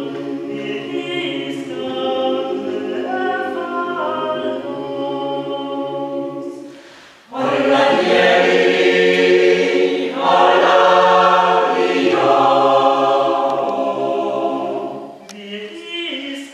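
Mixed choir of men's and women's voices singing a cappella. About seven seconds in the singing stops for a moment, then comes back louder and fuller, softening again near the end.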